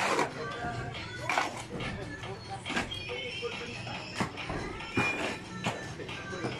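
A shovel scraping and knocking through wet concrete mix in separate strokes, roughly one every second and a half, with workers' voices in the background.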